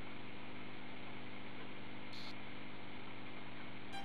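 Steady background hiss with a faint low hum: room tone of a bench recording, with a brief faint high blip about two seconds in.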